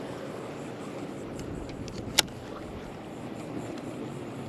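Steady wind and water noise around a small open fishing boat, with one sharp click a little past halfway through.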